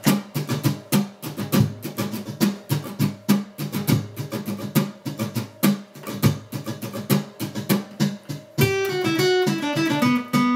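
Steel-string acoustic guitar strummed with a pick in a fast, percussive driving rhythm of chords. Near the end the strumming gives way to ringing picked notes in a falling line.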